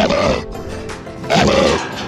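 A large long-haired dog barking twice, about a second apart, in short rough barks.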